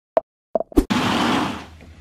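Three short pitched pops, sound effects of an animated logo sting, followed by about half a second of loud rustling hiss that fades away.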